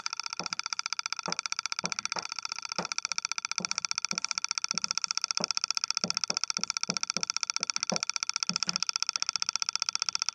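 Chalk on a blackboard as someone writes: a string of irregular short taps and scratches. Underneath runs a steady hiss that pulses rapidly, many times a second.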